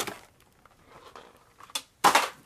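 Faint handling noise of a blister-carded diecast toy truck being moved about, with a light click near the end.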